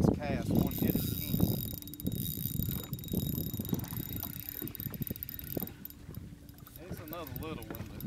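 Spinning reel being cranked while a hooked bass is fought in, a fine rapid ticking and whirring of its gears over a low rumble of wind and water. A man's voice sounds briefly near the end.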